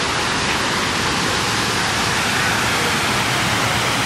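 Steady rushing of water pouring down the Houston Water Wall, a large outdoor fountain, heard as a loud, even roar.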